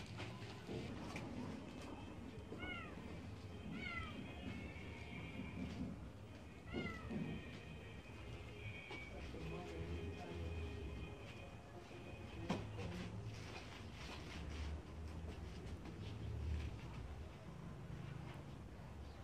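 Faint animal calls: three short calls, each falling in pitch, two of them about a second apart a few seconds in and a third near seven seconds, over a low background rumble.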